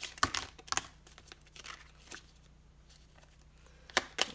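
An oracle card deck shuffled by hand: a quick run of crisp card clicks and flicks in the first second, a quieter stretch of faint ticks, then another sharp click near the end.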